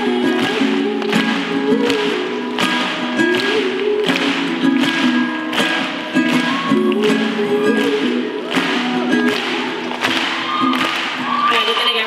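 Live ukulele song with a voice carrying the tune and no clear words, over a steady beat of sharp hits about one and a half per second.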